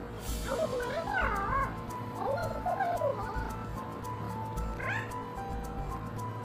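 A woman shouting in a high, strained voice, in two outbursts, the second near the end, over background music with a steady low pulse.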